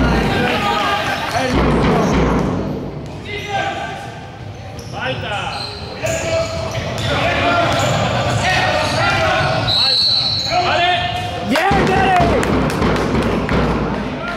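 A basketball dribbled on a wooden court in a large, echoing sports hall, with players and spectators shouting over the bounces.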